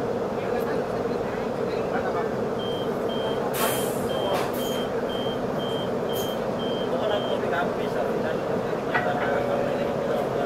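An electronic warning beeper giving about ten short, high, evenly spaced beeps, a little over two a second, over the steady hum of a stopped CRH6A electric multiple unit's carriage. A couple of brief clicks come in the middle of the beeping.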